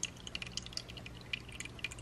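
Faint water dripping and trickling in a shallow turtle tank: many small irregular drips over a low steady hum.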